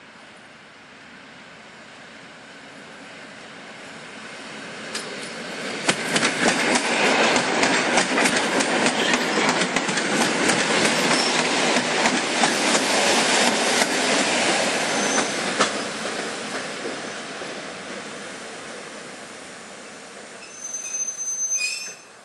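PKP EN57 electric multiple unit approaching and passing close by, its wheels clattering over the rail joints. The sound builds over the first several seconds, is loudest for about ten seconds with rapid sharp clicks, then fades as the train moves away.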